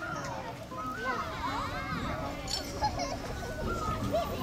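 Children in an audience chattering and calling out, several young voices overlapping.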